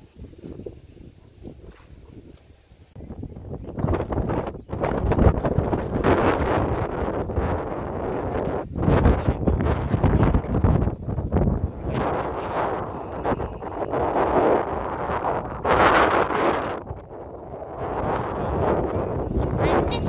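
Wind buffeting the microphone, faint at first, then loud from about four seconds in, swelling and dropping unevenly in gusts.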